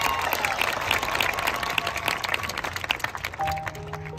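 Audience applauding with a few cheers as a marching band is announced. About three and a half seconds in, the band comes in with steady held notes while the clapping fades.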